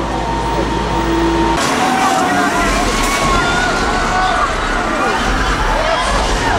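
A tour tram rumbles through a dark tunnel with a steady hum. About one and a half seconds in, the attraction's loud soundtrack starts suddenly: a noisy mix with slowly gliding, wavering tones, and voices mixed in.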